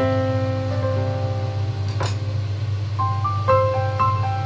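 Background music: a gentle melody of sustained piano-like keyboard notes over a steady low bass tone. One brief click about halfway through.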